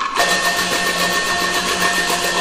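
A Teochew opera instrumental ensemble strikes up suddenly a moment in: rapid percussion strokes over several held pitches.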